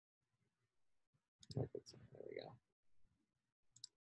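Two sharp computer mouse clicks, one about a second and a half in and one near the end, while a page is chosen from a menu. Between them is about a second of a low, wordless voice sound. Otherwise near silence.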